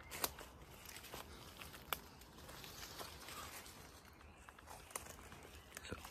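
Faint rustling and crunching of footsteps through dry leaves, twigs and undergrowth, with a few scattered snaps.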